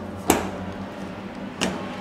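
Two sharp clicks about a second and a half apart, the first louder, as small parts of a spectroelectrochemistry cell are handled and set down on a tabletop. A steady low hum runs underneath.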